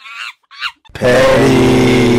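Edited-in comedy sound effect: a few short, high, squeaky monkey-like calls, then about a second in a very loud, buzzy blast held on one low pitch.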